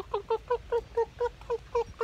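A man's voice imitating a rooster's food call: a quick run of about nine short, evenly spaced clucks at a steady pitch, meant to call the hens to food.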